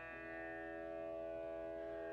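Flute improvising in Indian classical form with extended techniques: long held notes with a shift in pitch just after the start, over steady sustained tones.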